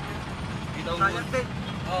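Steady low vehicle rumble beneath a few spoken words.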